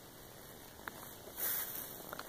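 A dog scrabbling at dry dirt and leaf litter, faint, with a single click a little before the middle and a brief scratchy rustle about one and a half seconds in.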